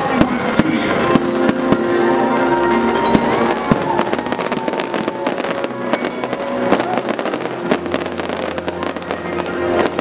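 Aerial fireworks bursting with many sharp bangs and crackles, the crackling growing dense and rapid in the second half, over show music with sustained tones.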